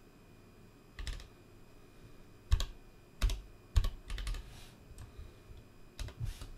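Computer keyboard keys pressed in a few separate strokes: one about a second in, then a loose run of sharp clicks with dull thumps from about two and a half to four and a half seconds.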